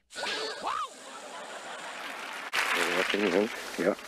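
Water from a lawn sprinkler hissing as the spray reaches a cat, with a short rising sound near the start. About two and a half seconds in it cuts to louder outdoor home-video sound with a person's voice.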